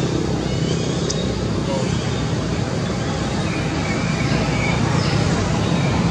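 Steady, loud outdoor background noise, like a continuous roadway hum, with faint indistinct voices.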